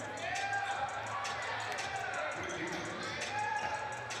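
Basketball being dribbled and play running on a hardwood gym floor: ball bounces, short sneaker squeaks, and voices in the gym behind.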